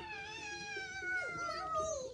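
A young child's long high-pitched cry, held about two seconds and sliding slowly down in pitch.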